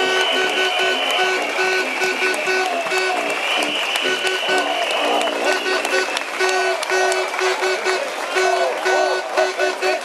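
A rally crowd applauding and cheering. Over the applause runs a rhythmic pattern of short repeated tooting tones, with a steady shrill tone that stops about halfway through.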